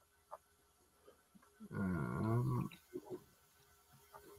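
A person's wordless voice, a drawn-out hum of about a second that bends in pitch, after a faint click.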